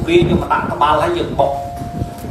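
A man speaking Khmer into a microphone, with a single steady tone held for about a second near the end.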